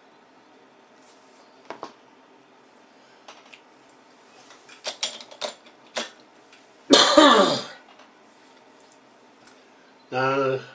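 A few light clicks and taps of items being handled on a workbench, then a man clears his throat about seven seconds in, one short rasp falling in pitch.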